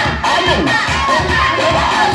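Dance music with a steady beat, with a crowd of onlookers shouting and cheering over it.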